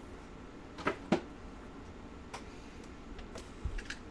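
Trading cards being handled and shuffled through: two short sharp clicks about a second in, then a few fainter ticks.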